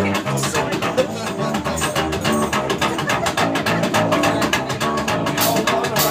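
Live rockabilly trio playing the instrumental opening of a song: electric guitar over upright double bass and drum kit, with the drums coming in harder near the end.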